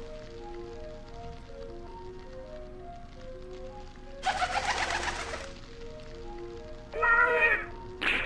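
A soft, slow melody of held notes plays throughout. About four seconds in there is a brief rushing noise lasting just over a second, and near the end a crow gives one loud, harsh caw.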